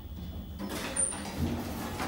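Elevator doors sliding open over the low steady hum of the elevator car, with a brief high-pitched tone about a second in.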